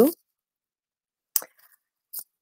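A pause in a woman's speech over a noise-gated call line: the tail of a word, then dead silence broken by one short, sharp click about one and a half seconds in.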